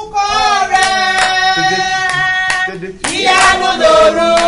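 Worship singing in long held notes, with hands clapping along.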